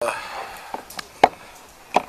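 A few short, sharp clicks picked up by a close microphone in a pause between words, the loudest just over a second in.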